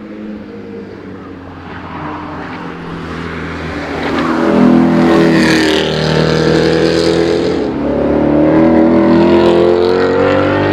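Ford Mustang Shelby GT350 prototype's flat-plane-crank V8 accelerating hard past on a race track. It is fainter at first and grows loud about four and a half seconds in. The engine note dips briefly near eight seconds, then climbs in pitch again.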